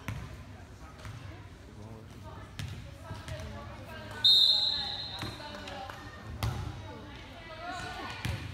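A referee's whistle blows once, short and sharp, about four seconds in, with the players set in position for the next serve. A few dull thuds of a volleyball striking the hardwood gym floor fall before and after it, over background chatter.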